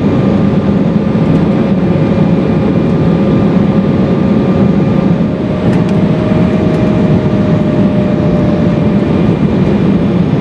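Steady cabin noise of an Embraer E-175 in flight, heard from a window seat: the airflow and engine roar of its GE CF34 turbofans. A faint whine runs in the roar and shifts slightly higher in pitch about five seconds in.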